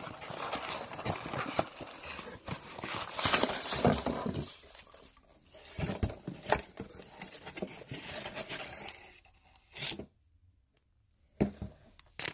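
A cardboard shipping box being opened by hand: tearing and rustling of cardboard, with foam packing peanuts crinkling and shifting as the card box is pulled out. Irregular handling noise with scattered clicks, going quiet for about a second and a half near the end before a few more knocks.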